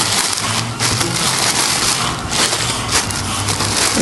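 Plastic sheeting wrapped around a crate engine crinkling and rustling as it is handled, a dense crackle with a low steady hum beneath.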